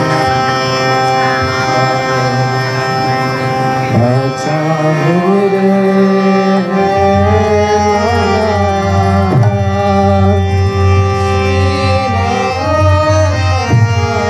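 Indian classical music led by a harmonium, its reedy notes held steady. Deeper sliding pitches come in about halfway through, with tabla.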